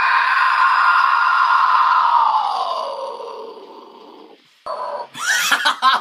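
A harsh, metal-style vocal scream held for about four seconds, sliding down in pitch as it fades out. After a brief break, a voice comes in again near the end.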